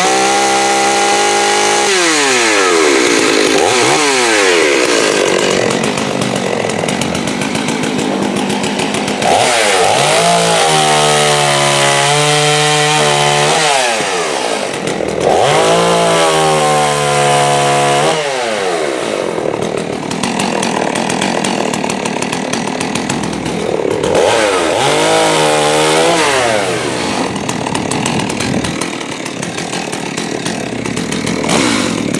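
Holzfforma G388 two-stroke chainsaw (a Stihl MS380 clone) revving and cutting through a small maple trunk, its pitch dropping as the chain loads in the wood and climbing again when the throttle is blipped between cuts, several times over.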